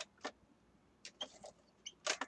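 A few light clicks and taps of small cardstock pieces being handled and set down on a cutting mat: one near the start, another a moment later, then a small cluster in the second half.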